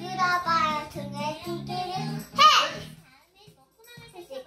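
A young girl singing along over a Korean pop song's backing track with a repeating bass line, her voice rising to a loud, high swooping note about two and a half seconds in. The music and singing then drop out for about the last second.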